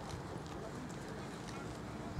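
Footsteps of several race walkers on a synthetic running track: a scatter of short taps over a steady low outdoor rumble.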